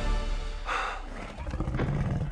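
Dramatic film-score music, with a low growl from a giant lizard coming in during the second half.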